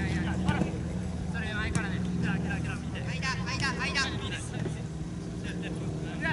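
Shouts and calls of football players on the pitch, over a steady low mechanical hum.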